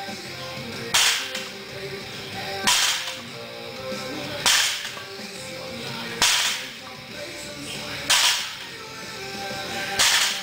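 Weight plates on a loaded axle bar striking the gym floor once per rep, a sharp impact with a short ring about every 1.8 seconds, five times, with background music.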